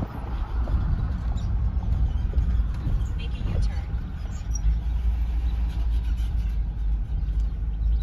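Low, steady rumble of a car rolling slowly, heard from inside the cabin.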